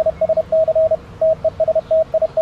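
Icom IC-7300 transceiver's CW sidetone: a single steady beep keyed on and off in Morse code dots and dashes, with a short break about a second in. The radio is transmitting a full 100-watt CW signal.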